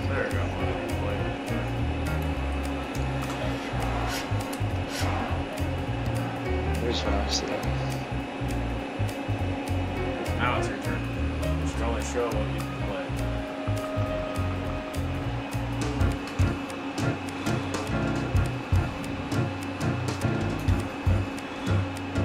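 A steady whirring hum, like a fan or motor running, under background music, with faint words now and then.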